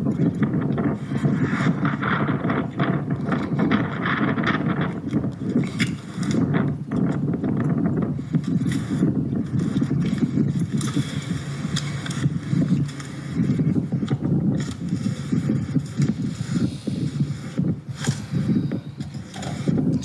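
Police body-camera audio: steady rumbling and rustling from clothing brushing the microphone and freeway traffic, with scraping and clatter of handling at the open door of a police car.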